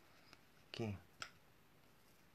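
A woman's single short vocal sound, under half a second, with a faint click before it and a sharp click just after, against faint room tone.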